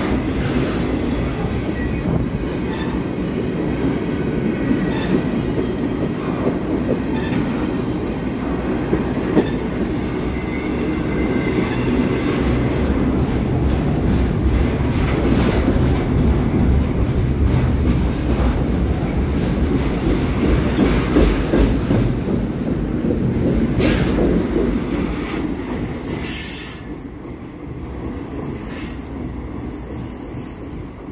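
CSX double-stack intermodal freight train's container-laden well cars rolling past close by: a steady rumble with wheel clatter over the rail joints and faint squeals of steel wheels on the rail. About 26 seconds in the sound drops away as the last car passes and the train recedes.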